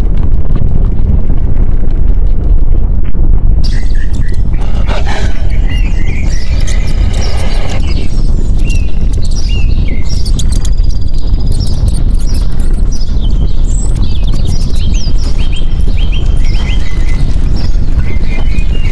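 Volcanic eruption rumbling, deep and loud, then about four seconds in birds start chirping and calling over a low rumble that carries on.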